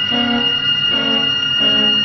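Cello bowing a phrase of short, separate notes, about two a second, over a single high note held steadily in the orchestra.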